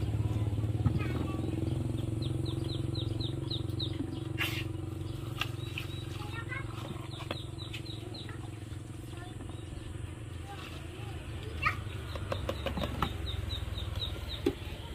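A steady low motor hum, with a few sharp clinks and knocks of ice being handled at a blender jar. A bird's quick high chirps come in short rapid runs three times over it.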